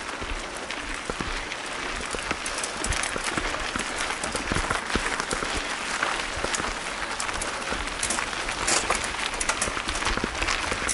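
Mountain bike tyres crunching over loose gravel, a steady crackle thick with sharp clicks of stones.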